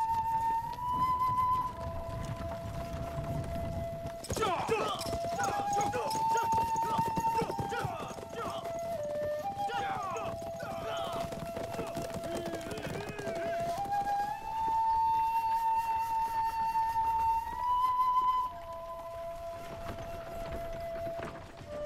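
Several horses galloping, with hoofbeats and neighing from about four to thirteen seconds in. Under them runs background music, a slow melody of long held notes.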